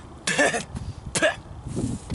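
A boy coughing twice in short, loud bursts. It is an acted cough, a wounded fighter choking up blood.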